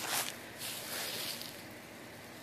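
Faint rustling of dry fallen leaves being gathered up by hand, in two soft swishes within the first second and a half.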